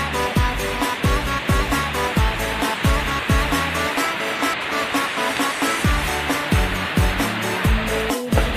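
Background music with a steady beat: a deep kick drum about every half second over held synth notes, the beat briefly thinning around the middle.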